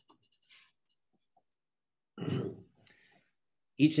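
A pause in a man's talk: near silence with a few faint clicks, then a short vocal sound about two seconds in, followed by a single click. He starts speaking again near the end.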